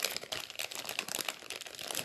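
Crinkling and rustling of paper or plastic card-making supplies being handled, a dense run of small crackles.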